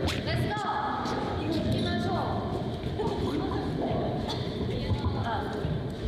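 Speech: young women talking in Korean.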